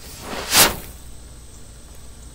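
Quickmatch fuse (blackmatch sealed in a paper tube) flashing through its length in one quick whoosh about half a second in, over within about half a second.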